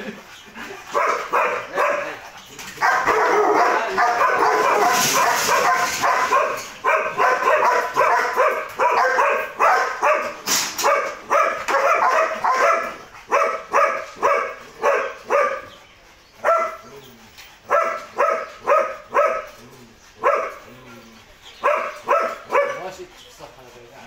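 A dog barking in quick runs of short, sharp barks, about two or three a second, with a longer unbroken stretch of barking a few seconds in. The barking stops just before the end.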